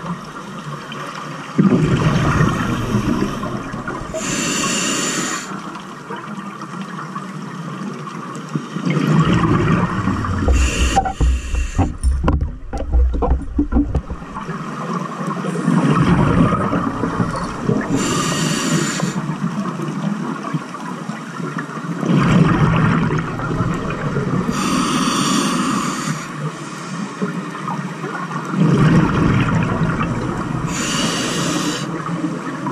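Scuba regulator breathing heard underwater: a short hissing inhale through the demand valve every several seconds, alternating with longer stretches of low bubbling as exhaled air vents from the exhaust.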